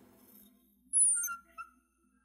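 A brief high-pitched squeak or whistle about a second in, falling in pitch over about half a second, followed by a shorter, lower squeak.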